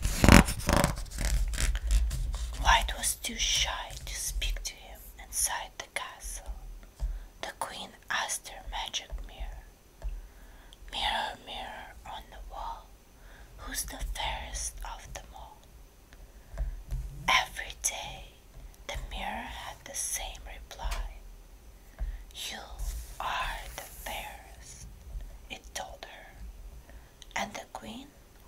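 A woman whispering, reading a storybook aloud, with a paper page of the book turning at the start.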